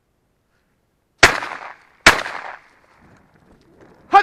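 Shotgun fired twice in quick succession, a little under a second apart, each shot a sharp crack with a short echoing tail: hunting shots at partridge.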